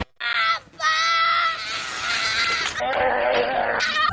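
A toddler screaming in a tantrum over sweets: a short high-pitched cry, then a long scream that drops lower about three seconds in.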